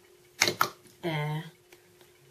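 A woman's brief vocal sounds: two short sharp clicks about half a second in, then a short held hum at a steady pitch about a second in.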